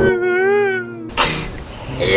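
A man's drawn-out, wavering crying wail lasting about a second, followed by a short breathy sob.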